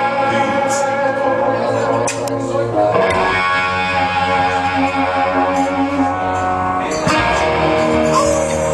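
Psychobilly band playing live, with guitar chords ringing out and changing about three seconds in and again near the end.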